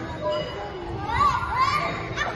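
Children playing, with indistinct voices and two short high-pitched calls in the second half.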